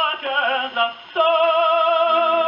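Tenor singing an opera aria with vibrato over an orchestra, played from a 1937 Odeon 78 rpm shellac record through a wind-up gramophone's acoustic soundbox, so the sound is thin and has no high treble. A few short phrases give way, about a second in, to a long held note.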